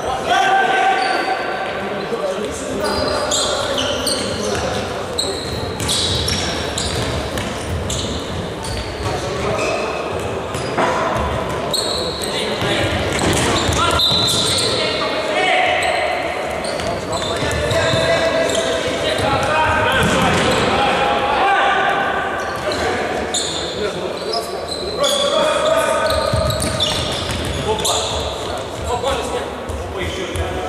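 A futsal ball being kicked and bouncing on a wooden sports-hall floor, with players' voices calling out, all echoing in a large hall.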